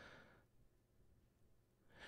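Near silence, with a faint breath from the man at the microphone in the first half-second.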